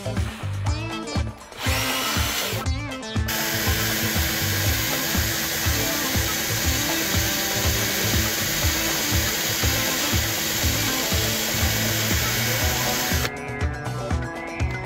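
Power drill spinning a wooden dowel pressed against a pine board, the dowel rubbing and burning its way into the wood. The steady drill noise starts about two seconds in, breaks off briefly, then runs on until shortly before the end, over background music.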